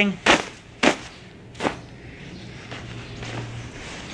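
Hand slapping a down-filled hammock underquilt three times in the first two seconds, sharp smacks a little over half a second apart, knocking the goose down along its baffles to one end.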